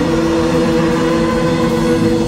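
Live rock band playing loud: heavily distorted electric guitars holding steady droning notes over bass and drums.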